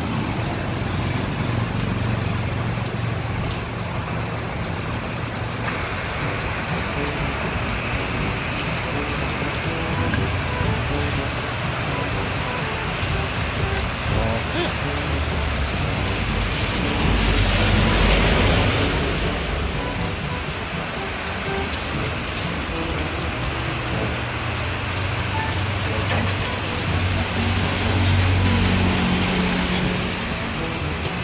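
Heavy rain falling steadily on the street and roof as an even hiss, with a louder rush a little past halfway through.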